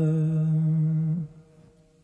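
A male voice hums a long, low held note, the final note of the song, which stops abruptly a little over a second in. Only a faint ringing tone is left after it.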